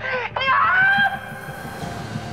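A high-pitched crying voice gives two short wails that fall in pitch in the first second, then trails off over soft dramatic background music.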